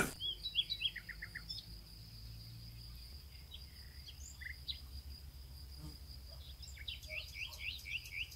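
Faint birds chirping, a short run of chirps in the first second or so and a quicker run of about four chirps a second near the end, over a steady high-pitched buzz like insects.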